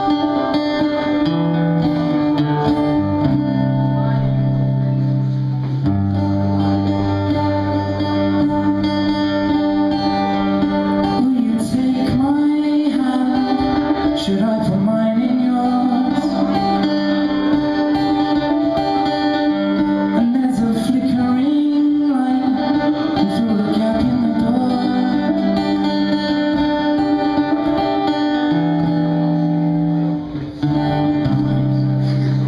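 A man singing live to his own strummed acoustic guitar. The guitar plays chords alone at first, and the voice comes in about a third of the way through.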